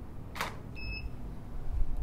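A single DSLR shutter release, the Nikon D750 firing one frame, heard as one sharp click; just after it comes a short, high electronic beep.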